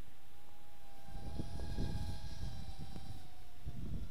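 Walkera Rodeo 110 FPV racing quadcopter's brushless motors and tri-blade propellers whining in flight: a steady high tone that dips slightly near the end. Wind rumbles on the microphone underneath.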